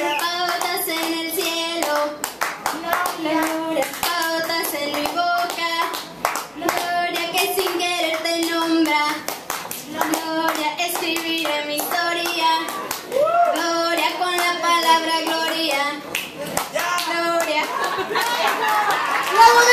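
A woman singing unaccompanied into a microphone, with people clapping along steadily in time.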